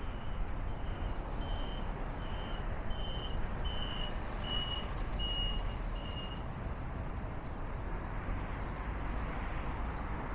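Steady road traffic noise from a city street, with a run of about ten short, high electronic warning beeps, about three every two seconds, that stop about six seconds in.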